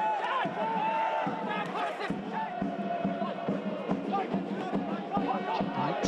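Football crowd singing a sustained chant in the stands, many voices holding steady notes, with a few dull thumps underneath.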